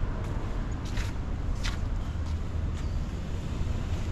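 Footsteps on a stone-paved square, a step about every two-thirds of a second, over a steady low rumble of background noise.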